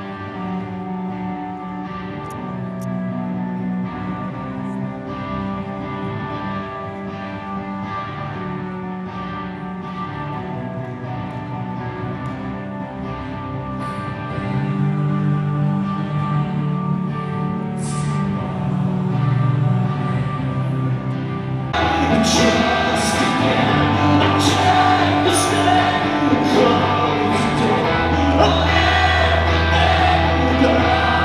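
Live rock band playing with singing: a quieter passage of sustained guitar and voice, then about two-thirds of the way through the full band comes in, much louder and fuller, with cymbals and heavy bass.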